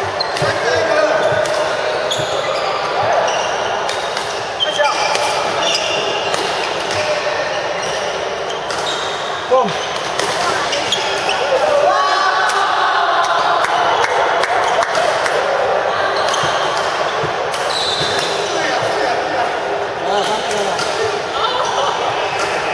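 Badminton doubles play in a large hall: sharp racket strikes on the shuttlecock and shoes squeaking on the court floor, over a constant din of voices from players on many courts.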